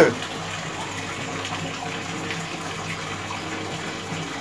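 Steady noise of running water with a faint low hum under it.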